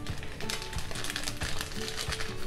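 Soft background music under light, irregular taps and clicks of ground black pepper being shaken onto raw chicken in a stainless steel bowl.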